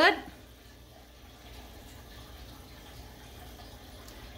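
A large pot of soup simmering on a gas stove, heard faintly and steadily.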